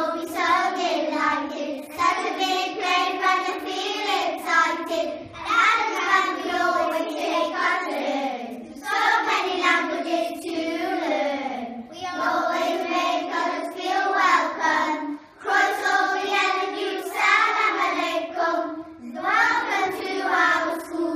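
A group of young schoolchildren singing a jingle together in unison, in phrases of a few seconds with short breaths between them.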